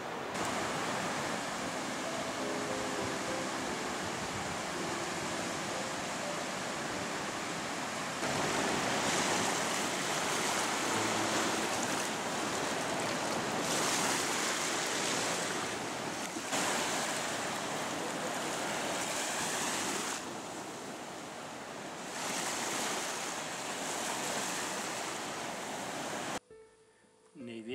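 Baltic Sea surf washing onto a sandy beach: a steady rush of breaking waves that swells louder and eases every few seconds.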